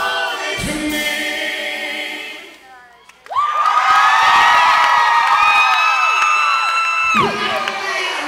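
Live country band music with singing that thins out and briefly drops away about two and a half seconds in. The lead singer then holds one long high note for about four seconds, cut off sharply near the end, while the crowd screams and cheers around it.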